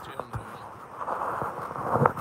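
Handling noise from a phone camera being moved and adjusted by hand: a few light knocks early, then rubbing and shuffling, with low indistinct muttering under it.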